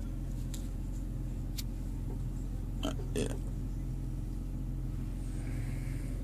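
BMW 528i's 3.0-litre inline-six idling, heard from inside the cabin as a steady low hum, with a couple of faint clicks.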